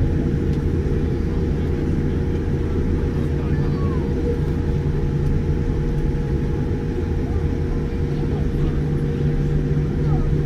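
Boeing 787-9 cabin noise while taxiing: a steady low rumble from the idling Rolls-Royce Trent 1000 jet engines and the airliner rolling on the taxiway, with a constant hum. Faint passenger voices sit underneath.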